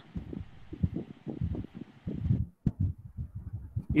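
Soft, irregular low thumps and knocks, several a second, over a faint hiss that cuts off about two and a half seconds in.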